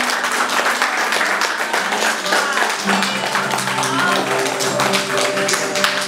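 A small crowd clapping and cheering. Music with sustained notes comes in about three seconds in.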